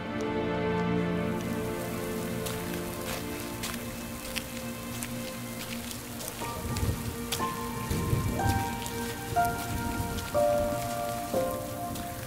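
Steady rain falling on a street, a hiss full of small drop ticks that comes in about a second and a half in, under soft background music with long held notes.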